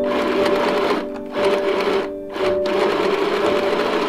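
Small mini household sewing machine stitching through a cloth mask and its elastic ear loop, running in three short bursts with brief pauses between: tacking down the elastic ends. Soft background music plays beneath it.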